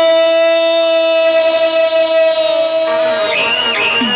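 A single loud musical note held steady for about three seconds. It fades slightly, and a short wavering, gliding higher sound follows near the end.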